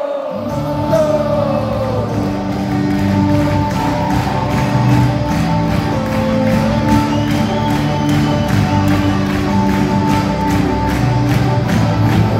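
Live rock band playing an instrumental passage, with drums, guitars, bass and keyboards. The full band comes in about half a second in and holds a steady drum beat.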